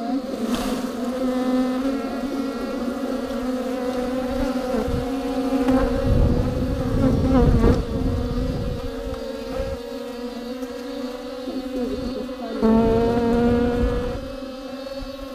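A mass of bees buzzing inside a hollow tree trunk, a dense steady hum of many wings at once. A low rumble comes in around the middle, and near the end the buzz suddenly grows louder.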